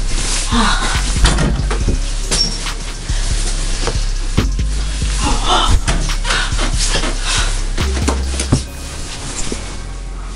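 Repeated irregular knocks and rattles of a small ball hitting an over-the-door mini basketball hoop: the backboard, rim and door, with music playing underneath.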